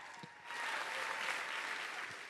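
Audience applauding a performer's entrance, the clapping swelling about half a second in.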